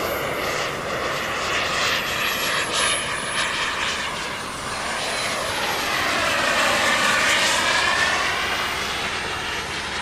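Radio-controlled model jet's turbine engine running in flight. It is a continuous jet whine with a thin high tone that dips in pitch and climbs again, and it grows loudest about seven seconds in as the jet passes.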